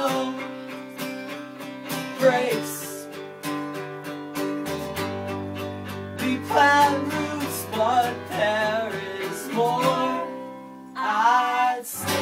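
Live band playing a passage between sung verses: strummed guitars over a steady bass line, with a wavering lead melody coming in several times. It dips briefly about ten seconds in, then swells again.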